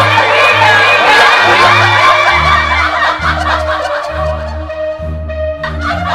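Several women shrieking and laughing excitedly over background music with a steady, stepping bass line. The laughter thins out about halfway through while the music carries on.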